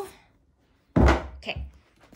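A dull thump about a second in, then a softer knock, as a hand handles the plastic-wrapped rolled canvas of a diamond-painting kit on a bedspread.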